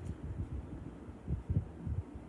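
Soft, irregular low thumps and rumbles of handling noise close to the microphone, with a cluster of stronger bumps near the end.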